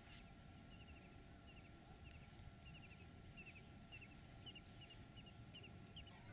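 Near silence: faint outdoor quiet with small, high chirps repeated in short groups about twice a second.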